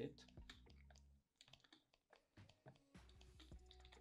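Faint, scattered clicks of a computer keyboard and mouse, from Alt-clicking and clicking with Photoshop's Clone Stamp tool.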